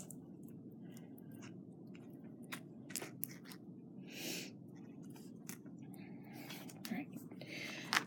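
Faint, scattered clicks and small taps of glass beads and wire links knocking together as a wire-wrapped bracelet is turned over in the fingers, over a steady low background noise, with a short breathy rustle about four seconds in.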